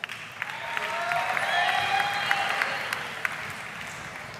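Audience applauding, with a few cheers mixed in; it swells about a second in and fades toward the end.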